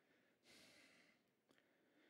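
Near silence, with a faint breath drawn for about half a second, starting about half a second in, just before reading aloud resumes.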